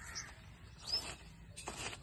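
Short bird calls over a faint steady background. The loudest comes about a second in, and another comes near the end.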